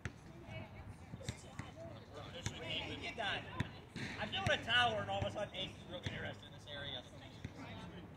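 People talking and calling out, with a few sharp knocks scattered through it.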